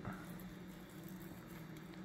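Soft, faint squishing of slow-cooked pork butt being pulled apart by gloved hands, the meat falling apart, over a steady low hum.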